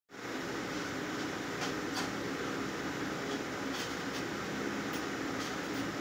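Steady hum of ventilation in a small room, with a few faint clicks.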